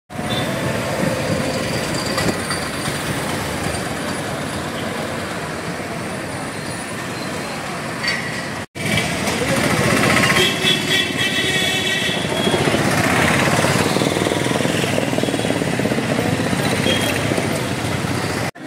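Town street traffic: truck and autorickshaw engines running, with people's voices mixed in. The sound breaks off for an instant about nine seconds in and is louder after the break.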